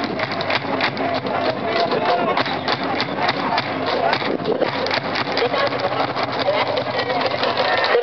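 A school cheering section chanting and shouting together in a baseball stadium's stands, with many sharp percussive hits all through.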